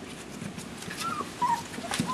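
Golden retriever puppies whimpering: two short, high, wavering squeaks about a second in and half a second apart, among faint clicks and scratches as the pups move about the newspaper-lined box.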